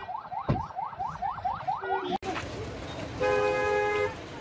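An electronic siren sounding in fast rising sweeps, about four a second, which cuts off a little after two seconds in. Near the end a vehicle horn gives one steady blast of under a second.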